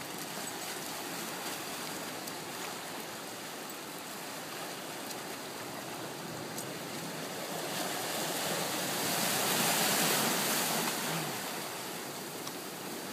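Ocean surf washing over a rocky shore: a steady rush of water that swells to its loudest about ten seconds in, then falls back.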